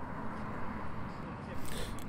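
Steady outdoor background noise with a low rumble from road traffic, a car passing on the road near the end.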